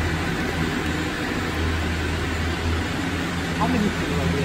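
Gondola lift station machinery running with a steady low hum, a cabin rolling slowly along the station rail.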